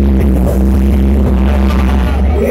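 Loud electronic dance music from a DJ set over club speakers, carried by a heavy, steady bass.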